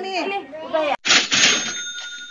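Cash-register "ka-ching" sound effect dropped in about a second in, after a brief cut: a sudden clatter, then a bell tone that rings on steadily.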